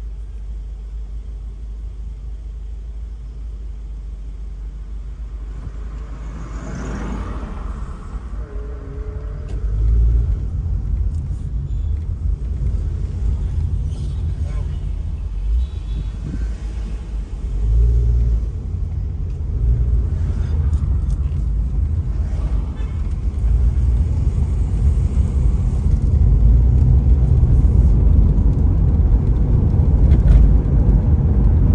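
Low rumble of a car's engine and road noise heard from inside the cabin, first creeping along in stop-and-go traffic, then moving off. It grows louder over the last several seconds as the car picks up speed.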